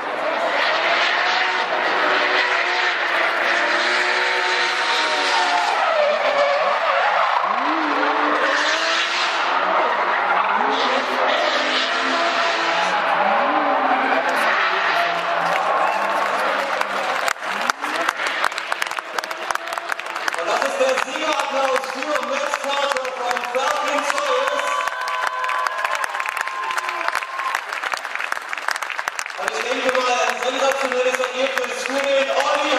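Drift cars on track: engines revving up and down in repeated sweeps, with tyre squeal and skidding under the engine noise.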